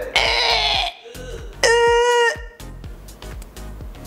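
A woman's voice over background music with a steady beat. A short breathy, noisy cry comes just after the start, then a single held, pitched non-word yell of under a second a little before the middle.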